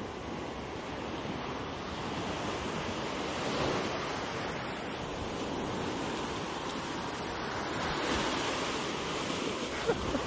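Ocean surf breaking and washing up onto a sandy beach: a steady rush that swells a little louder about a third of the way in and again near the end.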